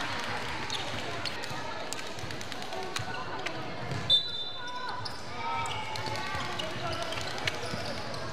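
Sounds of a youth basketball game in a gymnasium: a ball bouncing on the hardwood and shoes on the court, with players and coaches calling out. A short, loud, high-pitched sound comes about four seconds in.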